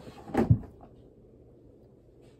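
Handling noise close to the microphone, with one sharp knock about half a second in as a small object is picked up.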